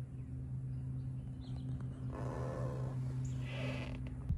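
A steady low mechanical hum. About halfway through, a rustling noise swells up over it, and a few faint high chirps come through.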